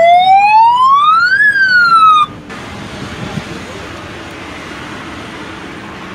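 Electronic siren on a police motorcycle sounding one wail: the pitch rises for about a second and a half, dips briefly, and cuts off suddenly a little over two seconds in. After it, only steady background noise remains.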